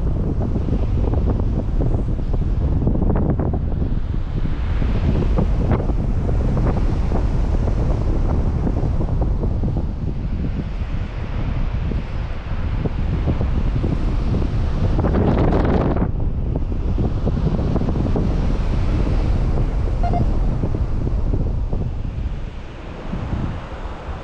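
Wind buffeting the camera's microphone in flight: a loud, steady rush of air with a stronger gust about fifteen seconds in.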